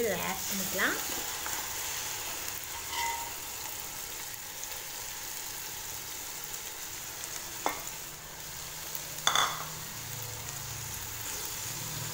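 Oil sizzling in a steel pot as marinated chicken goes in on top of fried onions. There are two short clinks in the second half, from the utensils against the pot.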